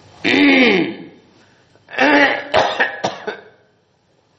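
A man clearing his throat and coughing in two bouts: a short one just after the start, then a longer, broken-up one about two seconds in.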